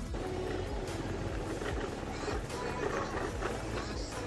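Motorbike riding along a bumpy dirt trail: engine and wind noise, with music running under it.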